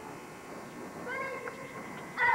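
Low murmur of a gymnasium crowd, then about a second in a cheerleader's high, drawn-out shouted call as the cheer begins.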